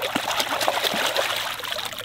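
Water splashing and trickling as a filleted coho salmon carcass is swished by hand in the water to rinse it, easing slightly near the end as it is lifted out dripping.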